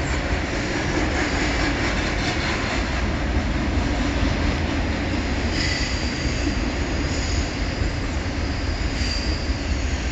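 Double-stack intermodal freight cars rolling over a stone arch bridge: a steady rumble of steel wheels on rail, with faint high wheel squeals a few times.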